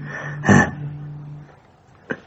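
A low guitar note ringing and dying away about a second and a half in, with one short, louder sound about half a second in.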